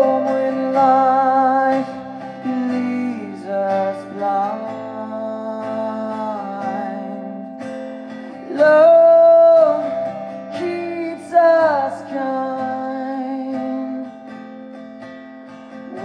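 Live male vocal with strummed acoustic guitar: long held sung notes over a steady guitar part, loudest about nine seconds in, with a falling note a little later and a quieter stretch near the end.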